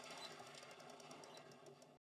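Near silence, with only a faint hiss.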